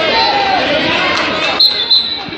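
Voices of people talking in a gymnasium, then a high, steady tone that starts about three-quarters of the way in.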